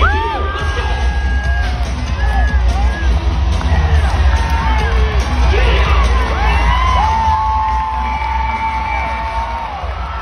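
Arena crowd yelling, whooping and cheering, many voices rising and falling, over loud music with a steady heavy bass.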